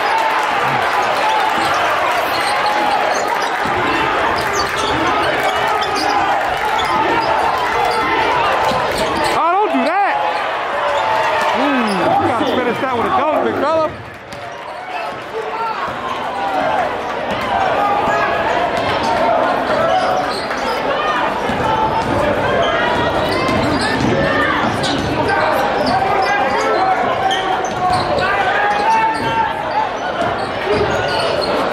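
Basketball dribbled on a hardwood gym floor, over a steady hubbub of voices from the spectators and players, with a few rising and falling squeaks near the middle.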